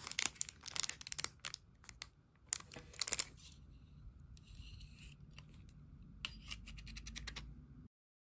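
Clear plastic packaging crinkling and rustling as a small folding plastic comb is pulled out of its bag. Near the end come a few sharp clicks as the comb is swung out of its mirror case and snapped shut.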